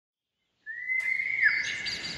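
A bird's whistled call: one long whistle that starts just over half a second in, dips briefly in pitch about a second later, then carries on with short higher chirps over it near the end.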